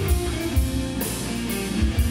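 A live blues-rock band playing an instrumental passage: an electric guitar through Marshall amplifiers over bass, drums and cymbals.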